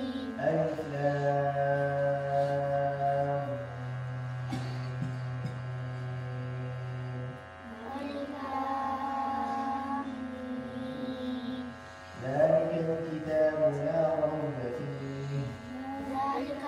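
Quran being recited in a melodic, chanted style by a single voice, which holds long, steady notes with ornamented turns between them and takes short breath pauses about seven and twelve seconds in.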